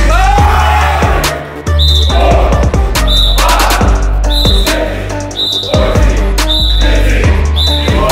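Hip hop music with deep bass notes and a steady beat.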